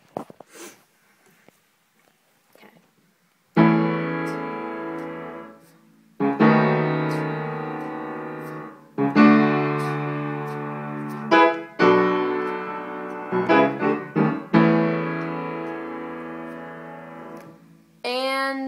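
Upright piano played with both hands: full chords struck every two to three seconds, each left ringing and fading, with a few short notes between them, beginning about three and a half seconds in.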